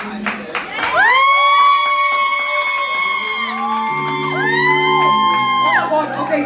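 A woman singing live into a microphone through a PA. About a second in she slides up into a long high held note lasting about two and a half seconds, and near the end she holds a second note. A low sustained backing chord comes in about four seconds in.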